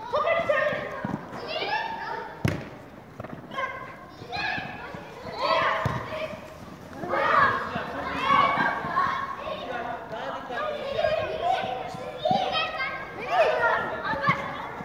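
Children shouting and calling to each other while playing football in a large covered hall, the voices echoing. Occasional thuds of the ball being kicked, the sharpest about two and a half seconds in.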